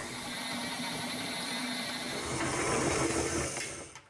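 KitchenAid Artisan stand mixer running steadily, its dough hook kneading bread dough in the steel bowl; the sound fades out near the end.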